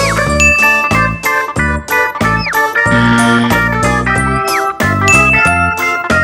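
Bouncy children's background music with bell-like jingling over a steady beat, with a short falling-pitch sound effect about every two seconds.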